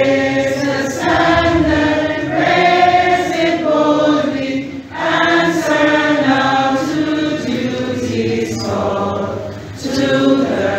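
A group of voices singing together in long sustained phrases, with short breaths about five seconds in and just before the end.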